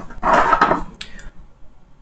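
Handling noise from the wired airbag module and programmer leads being moved by hand: a short rustling scrape, then two light clicks just after a second in.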